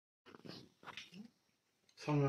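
Near silence: room tone with a few faint, short, indistinct sounds, after a brief dead gap at the start.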